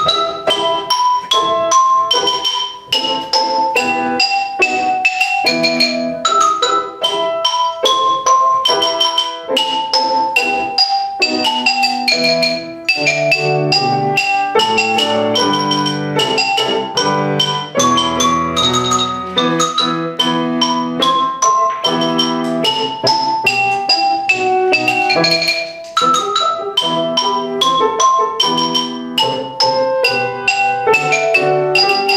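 Xylophone played with two mallets: a quick, continuous melody of struck wooden bars. It starts abruptly with the first note and is accompanied by lower sustained notes underneath.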